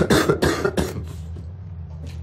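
A man coughing in a quick run of about five loud coughs in the first second, then stopping.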